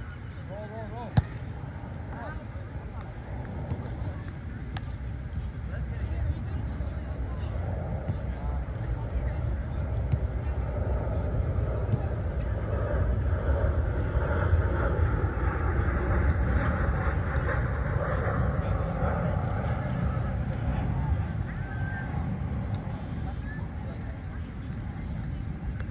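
A hand striking a volleyball with one sharp slap about a second in, followed by a few fainter knocks. These sit over a steady low rumble and indistinct voices that swell in the second half.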